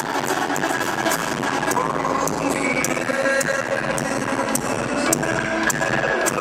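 Live band music from an acoustic guitar and a drum kit, with sharp drum hits about three times a second, mixed with crowd noise. It cuts in abruptly at the start.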